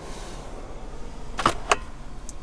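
Steady low hiss of a pickup truck's cab interior, with two sharp clicks about a quarter second apart around one and a half seconds in.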